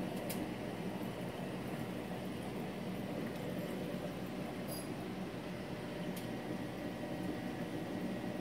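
Steady low hum and hiss of a running reef aquarium's pumps and water flow, with a couple of faint clicks.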